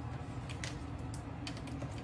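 Several faint, light clicks scattered at irregular intervals over a low steady hum: small handling noises.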